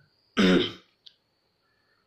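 A man clears his throat once, a short voiced burst about a third of a second in that falls in pitch and fades within half a second.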